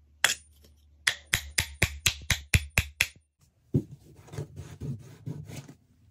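Steel claw hammer driving a nail into a softwood board: one blow, then a quick run of about nine sharp blows at roughly four a second. A softer, lower rough sound follows for about two seconds.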